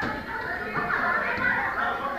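Many children's voices talking and calling out at once, a steady overlapping chatter across a large hall.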